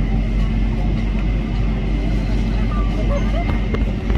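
Steady low drone of a jet airliner's cabin noise, from the engines and air handling, with a faint constant high whine over it.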